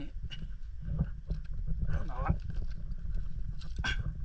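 Low rumble of water and wind at the microphone by a rocky shoreline, with scattered small clicks and knocks as a hand gropes among seaweed-covered rocks. A short voiced grunt-like sound comes about two seconds in.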